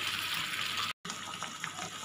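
Raw mango slices sizzling in hot oil and melting sugar in a kadhai: a steady frying hiss, broken by a brief dropout to silence about a second in.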